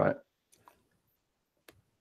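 A man's spoken word trails off, then near silence broken by two faint clicks about a second apart.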